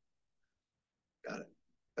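Near silence, then a man briefly says "Got it" about a second in.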